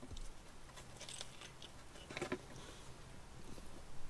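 Faint mouth sounds of a person biting into and chewing a burger, with a few small soft clicks and crackles, over a faint low steady hum.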